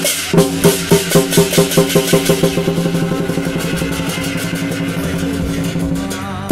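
Lion-dance percussion: a big drum with clashing cymbals and a ringing gong, beating about three strokes a second and then quickening into a fast roll.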